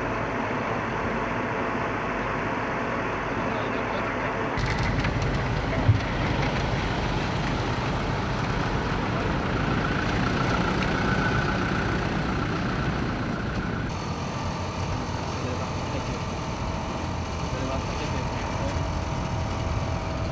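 Engines of armed military trucks running as a vehicle column moves along a dirt track, with outdoor field noise; the engine sound grows louder and deeper about four and a half seconds in, and a single sharp knock comes about six seconds in.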